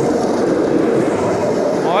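Red electric regional train passing close by, a loud, steady running noise.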